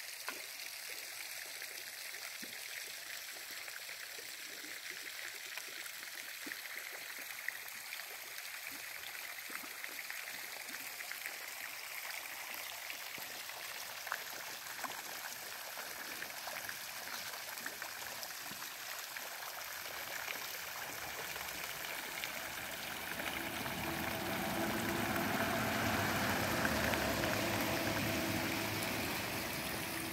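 Small pond fountain jets splashing steadily onto the water, growing louder from about twenty seconds in.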